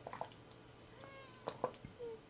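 Faint clicks and crinkles of a plastic water bottle as someone drinks from it, with one short pitched squeak about a second in.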